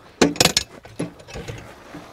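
Steel swing-away rear rack being unlatched and opened: a quick cluster of sharp metallic clicks and clanks from the latch about half a second in, then a few lighter knocks.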